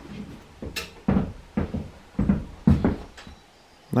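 Footsteps crunching through dry fallen leaves on a woodland floor, about two steps a second.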